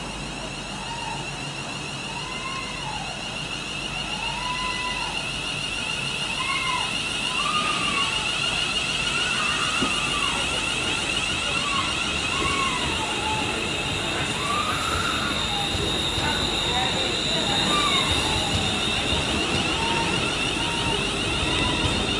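A Class 350 Desiro electric multiple unit pulling away and accelerating. Its electric traction equipment gives a steady high whine with repeated rising-and-falling tones, and the sound grows gradually louder as the train moves past.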